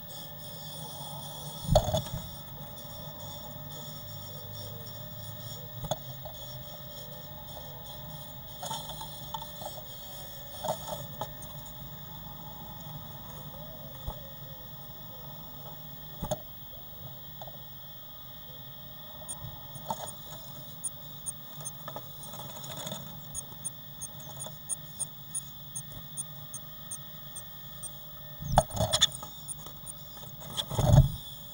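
Blue tit moving about inside a wooden nest box: scattered knocks and scratches against the wood and nesting material, loudest near the end, over a steady hum. In the last third comes a run of short, high, evenly spaced notes, about three a second.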